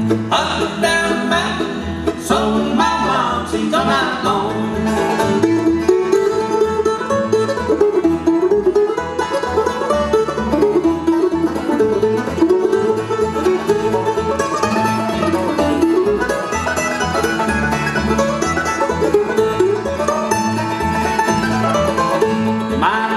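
Bluegrass band playing an instrumental break: five-string banjo, mandolin, acoustic guitar and upright bass, with a winding lead line over a steady bass pulse.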